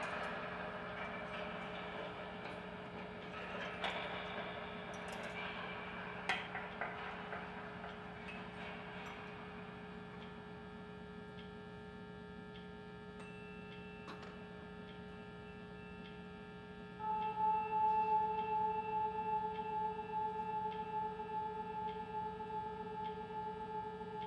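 Live experimental drone music from guitar and electronics: layered sustained tones over a steady low hum, with a few sharp, ringing accents in the first seconds. About two-thirds of the way in, two louder held tones enter together, and a faint regular ticking sounds beneath them.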